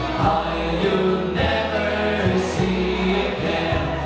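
Live folk-rock band playing, with strummed acoustic guitar, electric bass and several male voices singing together.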